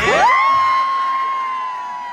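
A high-pitched, long whoop of cheering: one voice sweeps up sharply, holds a single level note for a couple of seconds and then falls away, over a little crowd noise.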